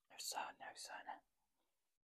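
Faint close-up mouth sounds from a woman with a mouthful of food, in a few short breathy pieces over about a second.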